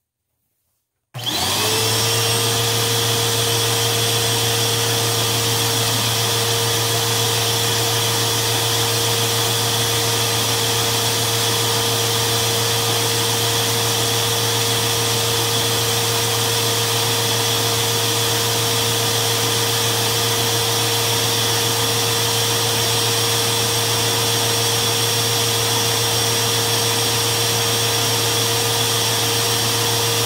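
A Eureka Lightspeed 4700 upright vacuum cleaner is switched on about a second in. Its motor whine rises quickly to speed and then runs steadily and loudly with a low hum underneath. It runs with its filters in, its brush roll spinning, and its nozzle sealed onto an airflow test box.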